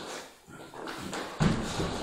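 An actor on all fours imitating a dog: breathy, noisy dog-like sounds, with a louder thump and rustle about one and a half seconds in.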